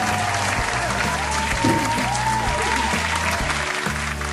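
Applause over background music.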